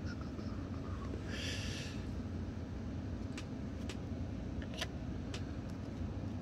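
Steady low room hum, with a short soft rustle about one and a half seconds in and a few faint ticks later as a stack of glossy trading cards is handled and the top card moved aside.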